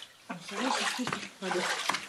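A woman talking in short, indistinct phrases in a small brick cellar, with a steady hiss underneath.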